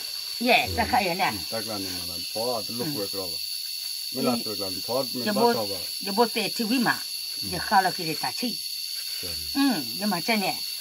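People talking in short phrases, with a steady high-pitched hiss behind the voices.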